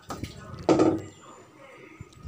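A metal spoon stirring rice, dal and jaggery water boiling in a steel pot, with liquid sloshing and bubbling. A brief louder burst comes just under a second in.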